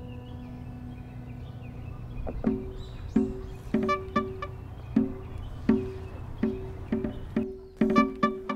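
Background music: a held note for the first two seconds or so, then short notes repeating about every two-thirds of a second, over a steady low rumble.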